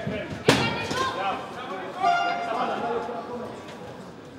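A single sharp smack of a strike landing on a fighter's body in a clinch, about half a second in, amid shouting voices from around the ring.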